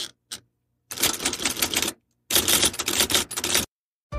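Typewriter typing: a couple of single keystrokes, then two quick runs of clacking keys, each lasting about a second.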